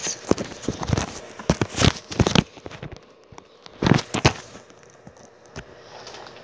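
Handling noise from a phone held close to its microphone: a run of knocks, bumps and scrapes as the phone is gripped and moved, loudest around two seconds in and again about four seconds in.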